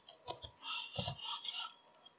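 A computer mouse sliding across the desk: a rubbing scrape about a second long, with a few soft knocks just before and during it.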